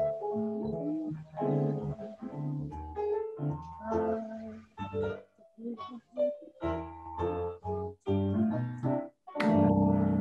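Jazz played on an electronic keyboard: chords and melody in short, choppy phrases with brief gaps, then a loud held chord near the end. This is the theme coming back to close out the tune.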